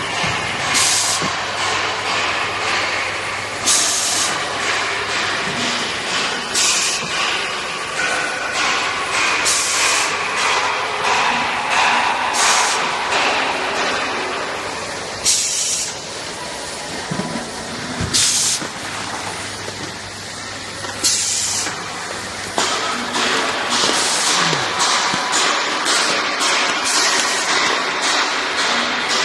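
Automatic measuring-cup filling and foil cup-sealing machine running: a steady mechanical din with a sharp hiss of air about every three seconds, typical of the sealer's pneumatic cylinders cycling.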